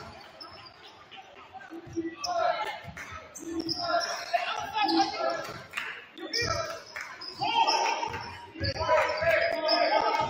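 Basketball dribbled on a hardwood gym floor, a series of low thuds, with short high-pitched sneaker squeaks and players' voices calling out on court, all echoing in the gym.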